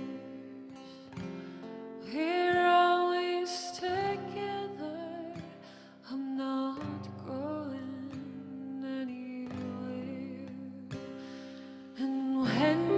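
A woman singing a slow song live, holding wavering notes, accompanied by acoustic guitar and keyboard.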